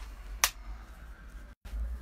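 Handling noise from a phone held close in the hand: one sharp click about half a second in, over a steady low hum, with the sound cutting out for an instant near the end.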